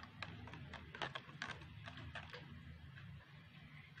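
A spoon stirring sawdust into water in a plastic cup, knocking against the cup in a run of faint light taps that stop about two and a half seconds in.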